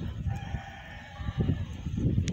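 A rooster crowing: one drawn-out call about a second long near the start, over low rumbling noise.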